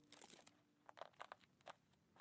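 Faint crackling of a Fine Marvel safety razor's blade cutting through lathered beard stubble: a short scrape at the start, then a run of crisp crackles from about a second in.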